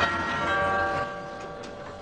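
Doorbell chime ringing: a bell-like tone starts about half a second in and slowly fades.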